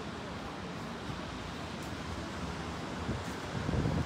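Wind blowing on a phone's microphone over a steady outdoor hiss, swelling briefly near the end.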